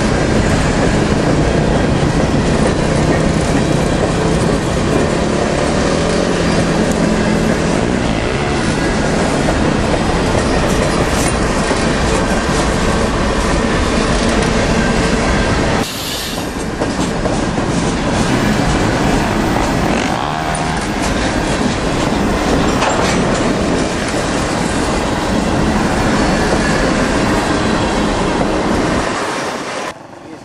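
Freight train of covered hopper cars rolling past at close range: a loud, steady rush of steel wheels on rail. It breaks off sharply about halfway through and picks up again, then drops away just before the end.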